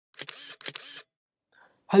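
Logo intro sound effect: two short, crisp noisy bursts about half a second apart, then a man's voice begins right at the end.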